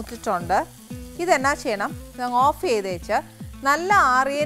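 Curry sizzling in a frying pan as a spatula stirs it, heard under a woman talking and background music.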